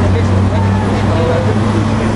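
Crowd of demonstrators talking among themselves over a steady low rumble.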